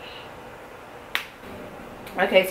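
One sharp metallic click about a second in, from the snap button at the waistband of a baby's jeans being fastened, over quiet room tone.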